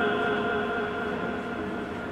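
A man's voice holding one long, steady note of Quran recitation (tilawat) over a microphone and PA, slowly fading.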